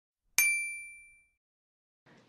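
A single bright, bell-like ding sound effect just under half a second in, its clear high tone ringing out and fading over about a second.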